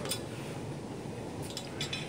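Gym room noise, a steady low hum, with a few light metallic clinks of equipment, most of them near the end.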